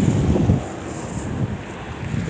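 Wind buffeting a handheld phone's microphone outdoors, a low gust loudest in the first half second, then a steadier low rush.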